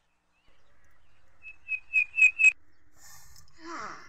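A bird chirping: a quick run of about five short, high notes, each louder than the last, about two seconds in. A brief falling call follows near the end.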